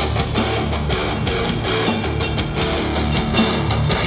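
Live rock band playing an instrumental passage with no vocals: electric guitar over a drum kit keeping a steady beat, loud and dense with heavy bass.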